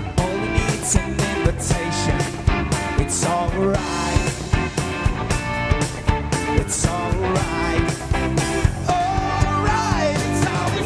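Live band playing an upbeat pop-rock song: a steady drum-kit beat under electric guitar and bass guitar.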